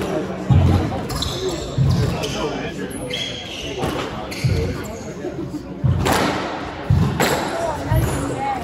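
Squash rally: the ball is struck and thuds heavily off the court walls five times, roughly every one to two seconds. Short high squeaks of sneakers on the hardwood floor come between the hits, with reverberation from the enclosed court.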